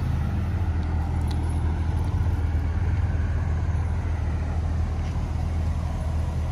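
A car engine idling steadily, a low even hum, most likely the Chevy SS's 6.2-litre V8.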